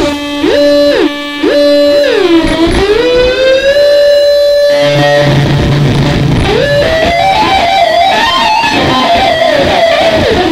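Electric guitar lead in an instrumental rock track: a fast run flipping between two notes an octave apart, then a note that dips, bends back up and is held for a couple of seconds. About five seconds in a bass line enters and the lead climbs in a stepwise melody.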